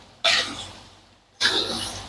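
Two short coughs about a second apart, each dying away quickly.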